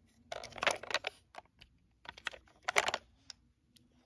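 Toy State Road Rippers mini fire truck, a hard plastic toy, being handled and turned over in the hands. Two short bursts of rapid clicking and rattling, one near the start and one about two seconds in.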